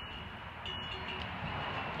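Steady outdoor background noise with a faint high-pitched tone coming and going; no clear sound from the statue.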